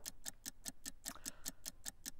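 Countdown-clock ticking sound effect: a faint, fast, even ticking of several ticks a second, marking a sale countdown.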